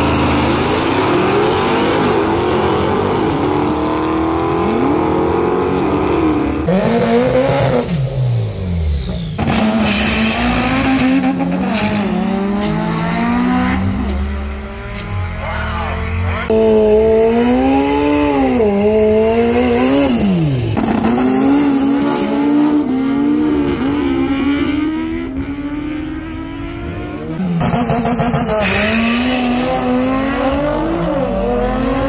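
Drag cars' engines revving and accelerating hard down the strip, the pitch climbing and dropping back again and again as they shift, in several short clips cut together.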